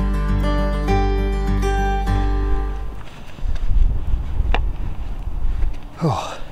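Acoustic guitar background music, plucked notes that fade out about halfway through, followed by gusty wind buffeting the microphone, with one short click near the end.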